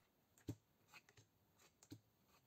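Near silence, with two faint ticks of playing cards being laid onto a tabletop, one about half a second in and one near the end.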